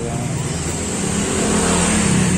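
Engine of a motor vehicle passing on the street, running steadily and growing slightly louder.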